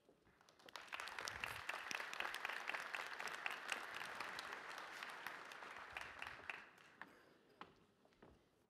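Large audience applauding. The clapping builds over the first second, holds steady, then dies away about six to seven seconds in, with a few last scattered claps.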